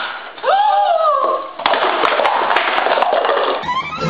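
A woman's high-pitched scream that rises and falls for about a second, followed by about two seconds of loud, rough noise with a few sharp clicks. Fiddle music starts near the end.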